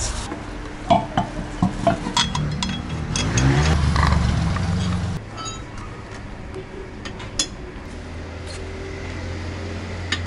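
Scattered metal clinks and taps of wheel bolts and tools while a flat tyre is swapped for the spare wheel, with a low rumble in the middle.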